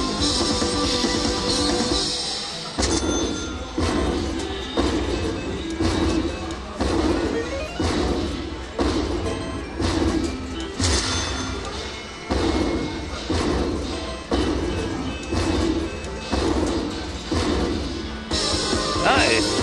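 Bally Lightning Cash slot machine playing its win rollup music while the win meter counts up. From about three seconds in, a loud hit sounds about once a second, each fading before the next.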